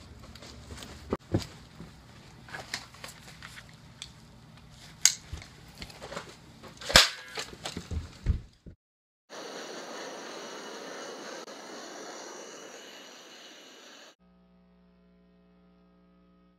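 A run of sharp knocks, clicks and clatters from someone moving fast in tactical gear. After a short silence, about five seconds of steady rushing noise cuts off abruptly, leaving a faint hum.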